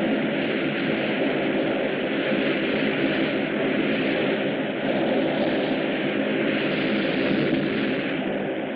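A film sound effect of floodwater rushing out through a burst dam, with a continuous rushing noise that stays even and unbroken.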